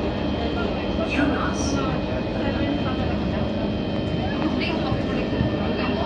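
Singapore MRT train running, heard from inside the carriage: a steady low rumble of wheels on rails, with people's voices over it at times.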